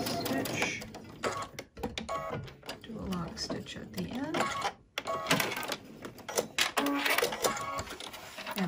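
Electric sewing machine stitching a seam at a steady speed, stopping about a second in. Short runs of clicking and mechanical clatter from the machine follow.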